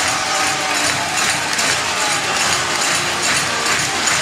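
Baseball stadium crowd cheering and clapping steadily for a home run.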